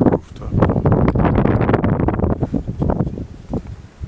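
Wind buffeting the microphone in uneven gusts, loud and low, easing off near the end.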